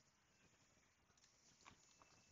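Near silence: room tone, with one faint single click near the end.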